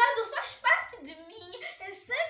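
A young woman's high-pitched voice, reciting emotionally in Portuguese, loudest in the first second and trailing off more quietly after that.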